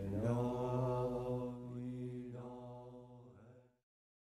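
Devotional chant: a voice singing long held notes over a steady low drone, fading away and stopping shortly before the end.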